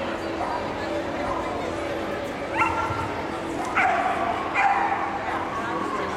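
A dog yipping three times, short sharp calls about two and a half, four and four and a half seconds in, over a steady background of voices.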